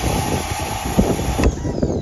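Pressure washer jet blasting water into the ports of a Subaru EJ25 cylinder head, a steady loud hiss of spray on metal that cuts off suddenly about one and a half seconds in. It is a leak test of the valves: water getting past a valve shows it is not seating.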